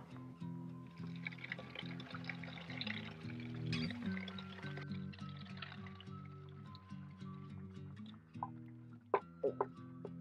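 Soft background music, with grape must (Pinot Noir skins and wine) pouring from a plastic bucket into a bag-lined bucket; the pour trails off about halfway through, and a few small knocks come near the end.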